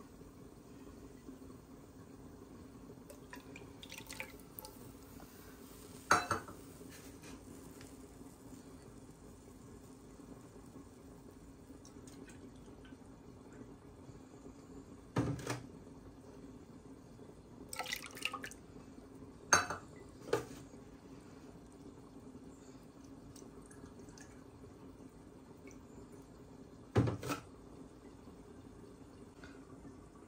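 Milk poured cup by cup into a pan of sautéed grated carrots, with about half a dozen short knocks and splashes of the measuring cup against the pan, over a steady low hum.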